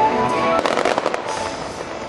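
Fireworks crackling in a rapid burst lasting about half a second, a little way in, over the show's orchestral score playing from loudspeakers.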